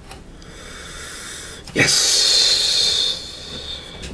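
A man's drawn-out, hissed "Yesss!": a short voiced "ye" and then the "s" held as a loud hiss for about two seconds. It is an exaggerated exclamation of delight at the drink's taste.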